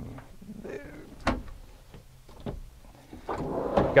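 A sharp knock about a second in, then a wooden pull-out pantry rolling open on its metal drawer slides near the end.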